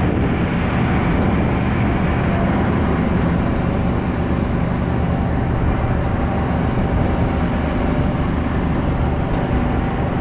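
Side-by-side utility vehicle's engine running steadily as it drives slowly over rough grass ground.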